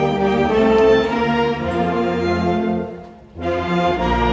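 A concert band of woodwinds and brass playing sustained chords. The music dies away into a brief pause about three seconds in, then the full band comes back in together.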